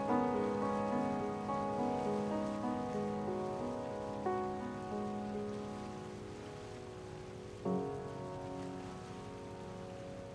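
Antique Chappell upright piano played slowly, chords and melody notes ringing and fading. The playing thins out after about five seconds, with one last chord struck near eight seconds and left to die away. A faint steady hiss runs underneath.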